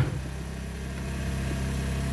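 A steady low mechanical hum, like an idling engine, running unchanged.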